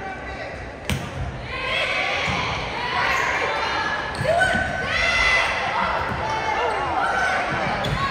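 Volleyball rally in a gym: a sharp smack of a ball hit about a second in and another near the end, amid players' shouted calls and spectators' voices echoing around the hall.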